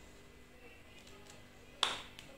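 Quiet room tone broken by a single sharp click near the end, ringing briefly.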